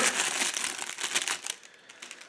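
Paper wrapper crinkling as it is pulled off a knife, dying away after about a second and a half.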